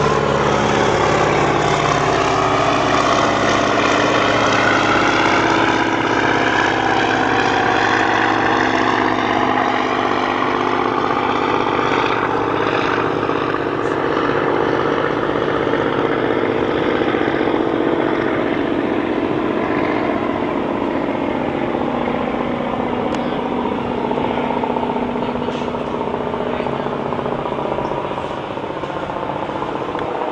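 Single-engine floatplane's propeller engine at takeoff power, a steady drone whose overtones slowly shift as the plane runs across the water and climbs away, easing off a little near the end.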